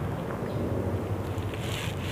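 Steady low rumble and hiss of wind buffeting the microphone.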